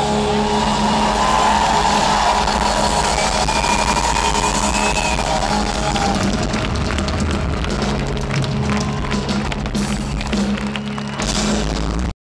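A rock band playing live through a concert PA, holding long sustained guitar and bass notes over drum hits.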